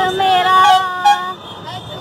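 A group of children singing a Hindi song together, one long held line that drops away about a second and a half in, over a low rumble.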